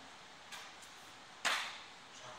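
A single sharp slap about one and a half seconds in, from the grapplers shifting position on the mat, after a faint tap about half a second in.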